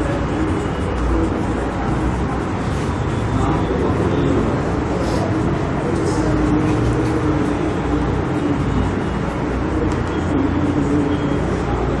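Steady, even background rumble, low-pitched and continuous, like road traffic.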